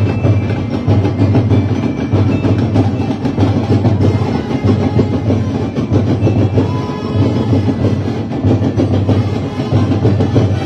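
Sinulog street-dance percussion: a drum ensemble playing a loud, fast, driving beat, with deep drum strokes pulsing in groups about once a second under rapid even strikes.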